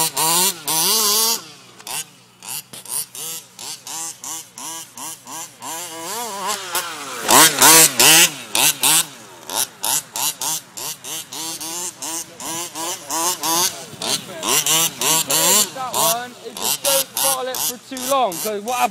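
Small two-stroke petrol engine of a large-scale RC buggy, revved up and down over and over as it is driven, its pitch rising and falling every fraction of a second. It is loudest about halfway through.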